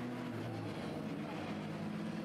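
Formula Regional single-seater's engine running steadily at low revs as the car rolls down the pit lane at the pit speed limit.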